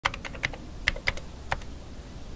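Fingers typing on a computer keyboard: a quick run of key clicks in the first half second, then a few scattered keystrokes.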